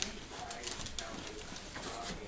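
Dogs play-fighting ("bitey face") on a cushioned dog bed: scuffling with a run of sharp clicks about halfway through and a few short vocal sounds.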